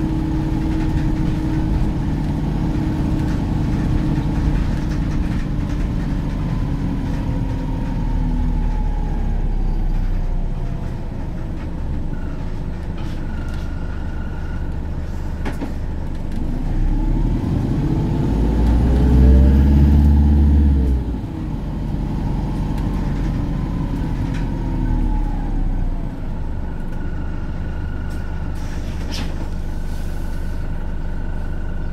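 Volvo B5LH hybrid double-decker bus heard from inside the lower deck while under way, its engine and drivetrain droning with pitch that rises and falls. The drone swells to its loudest about two-thirds of the way through, then drops back suddenly.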